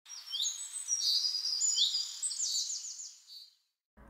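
Bird singing: a quick series of high chirps and whistles with a fast run of short falling notes near the end, stopping about three and a half seconds in.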